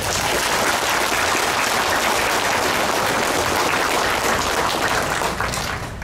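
Audience applauding: a dense, even clapping that starts abruptly and dies away near the end.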